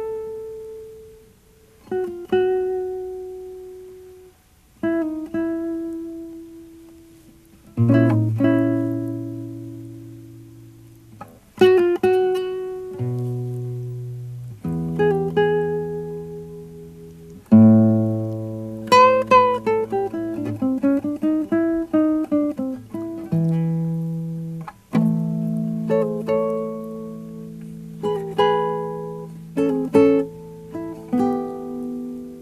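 Nylon-string classical guitar played fingerstyle, a blues in the key of A: single notes and chords plucked a couple of seconds apart and left to ring out, with low bass notes under them. From about halfway through the playing gets busier, with a quick run of notes.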